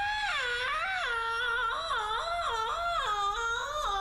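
A woman imitating a cat: one long, high yowling meow with no break, its pitch sliding up and down over and over.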